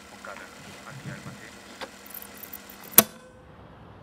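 Faint murmur of background voices over a low steady hum, with one sharp click about three seconds in.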